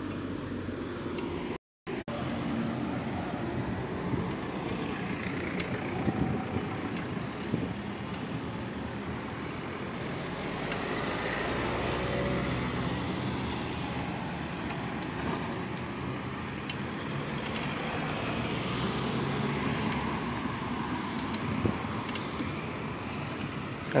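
Steady street traffic noise: the rumble of car engines and tyres on the road. The sound cuts out completely for a moment just under two seconds in.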